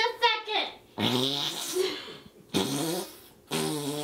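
A person making wordless vocal sounds: four drawn-out bursts of voice, each about half a second to a second long, with the pitch bending within each.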